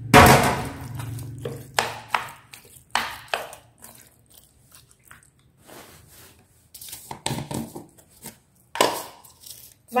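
Kitchen handling sounds at a stainless steel bowl of chopped raw chicken: a loud knock with a short low hum right at the start, then scattered soft knocks, clinks and rustles with quiet gaps between.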